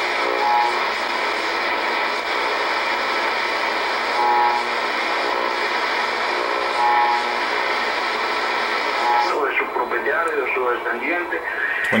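Shortwave receiver's AM audio while being tuned across the 22-metre broadcast band: steady static hiss, broken by a few brief whistles as the dial passes signals. A faint voice from a station comes in during the last couple of seconds.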